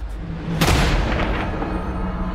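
A single loud shotgun blast about half a second in, with a long echoing tail that fades over about a second, over sustained dark trailer music.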